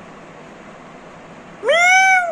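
A cat meows once near the end, a single call that rises and then falls in pitch.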